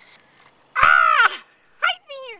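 A bird's harsh caw, one loud call about a second in that falls in pitch at its end, followed by a short second call near the end.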